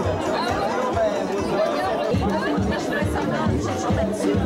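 Several people talking at once at dinner tables, over music with a steady bass beat in a large room.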